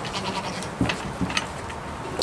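A goat bleating.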